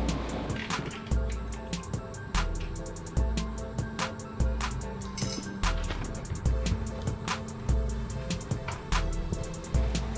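Background music with a steady beat: deep bass pulses and sharp percussion clicks over held tones.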